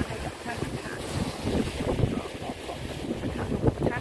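Wind buffeting the microphone on a boat under way at sea, over a steady low rush of the boat and water; a woman's voice speaks briefly near the start and again near the end.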